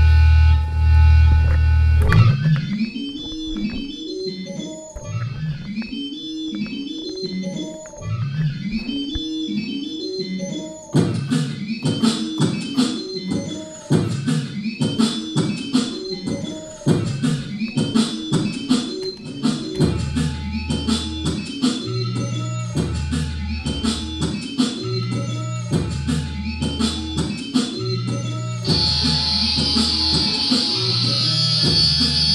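Electric guitar built up live in loops: a loud low amplifier hum for the first two seconds, then a repeating melodic phrase, joined about 11 seconds in by a steady rhythmic percussive pattern and about 20 seconds in by a low bass line.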